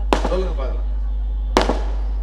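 A brief burst of a man's amplified speech over a steady low hum from the public-address system, cut by two sharp cracks, one just at the start and one about one and a half seconds in.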